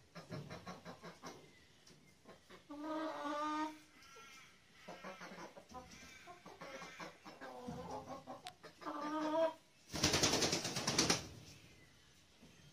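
A flock of domestic hens clucking and calling, with a longer drawn-out call about three seconds in. Near the end comes a loud flurry of noise lasting about a second.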